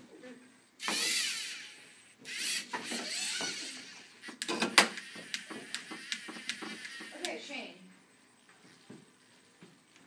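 LEGO Mindstorms NXT robot's servo motors whirring in two bursts as it drives and swings its arm down, followed by a run of quick clicks and clacks, the loudest about five seconds in.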